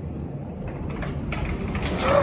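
Low rumbling wind and outdoor noise coming in through an opened door, growing steadily louder, with a woman's gasp late on.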